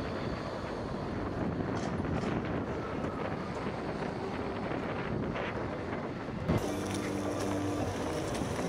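Wind buffeting the Garmin Virb 360 camera's microphone as it is carried at riding speed on a monopod, a loud, even rushing noise mixed with road rumble. About six and a half seconds in it breaks off abruptly, giving way to steady low hums.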